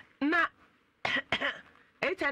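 A person coughing: three short coughs, one just after the start and a quick pair about a second in.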